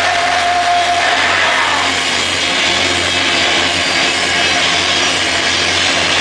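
Live crust-punk band's heavily distorted electric guitars and bass holding a loud, sustained droning chord, with a held feedback tone in the first second and little drum beat.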